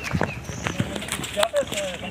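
Footsteps of a group walking on a muddy dirt path, with a few sharp knocks, under low background talk.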